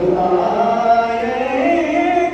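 A man's voice in sung recitation of a devotional poem through a microphone, holding one long melodic phrase whose pitch bends upward in the second half.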